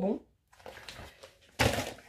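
A short, loud thud and rustle of handling noise about one and a half seconds in, as groceries are moved about close to the microphone.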